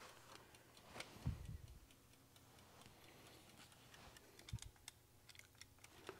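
Faint ticking of a small mechanical egg timer counting down, with two soft low thumps.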